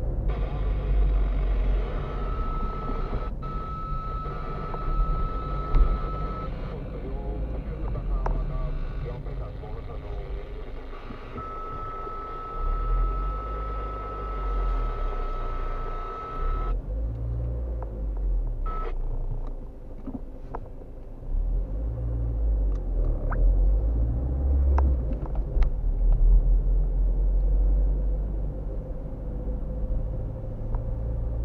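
Car engine and road rumble heard from inside the cabin while driving in town traffic, swelling and easing with speed. For a stretch in the first half, a faint steady high tone and hiss lie over the rumble.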